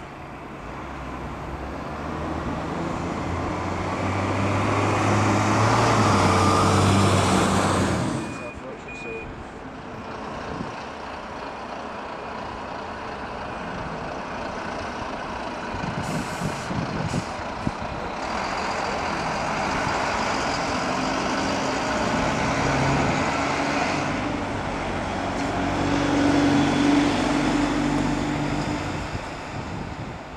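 A single-decker diesel bus engine grows louder as the bus drives past and breaks off suddenly about eight seconds in. Bus engine sound goes on after that, with brief hisses near the middle and another engine rising and falling in the second half.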